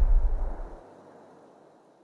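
The tail of a heavy boom: a deep rumble dying away, its low end cutting off just under a second in and the rest fading out about a second and a half in.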